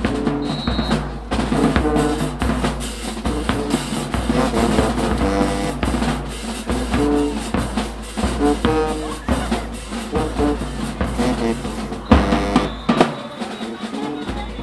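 High school marching band playing in the stands: a steady drum cadence of snare and bass drums with short pitched notes over it, and a louder full-band hit about twelve seconds in.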